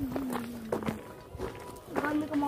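Footsteps walking on a dirt path, a little under two steps a second, over a long held, slowly falling musical note that fades out about halfway through.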